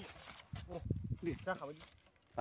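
Speech: a person talking in a local language.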